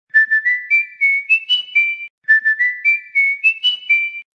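Short intro jingle: a high melody of about eight quick notes stepping upward, played twice.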